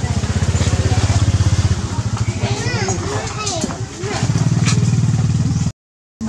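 A small engine running nearby with a fast, even low pulse, loudest in the first two seconds and again from about four seconds in, with voices in between; the sound drops out briefly just before the end.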